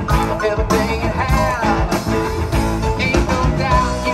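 Live rock band playing: drums, bass, keyboard and electric guitar, with a lead line bending up and down in pitch.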